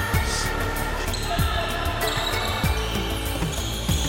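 Background music with a steady, evenly spaced kick-drum beat under sustained synth tones.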